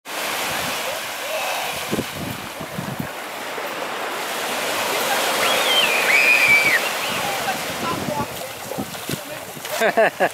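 Small waves breaking and washing up on a sandy beach, the surf swelling loudest around the middle. A brief high gliding call sounds over it about halfway through.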